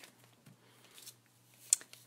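Quiet handling of pencil and eraser on a tabletop: a few faint light rustles, then one sharp tap near the end as the pencil is picked up and set to the paper.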